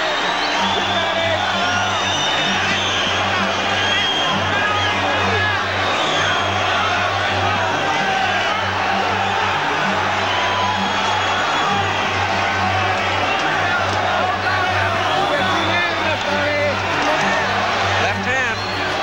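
Background music over a boxing arena crowd cheering and chanting, a dense, steady wall of many voices.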